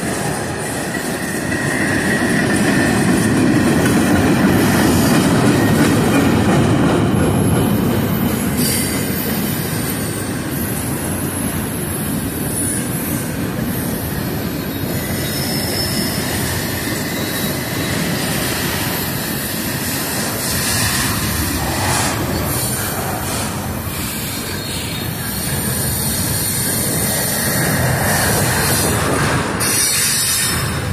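Double-stack intermodal freight cars rolling past on curved track: a steady rumble of wheels on rail with some wheel squeal and rail clicks. It swells a few seconds in and again near the end.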